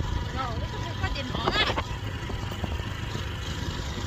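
A steady low rumble with a couple of short voice sounds, a faint one early and a louder, higher one about one and a half seconds in.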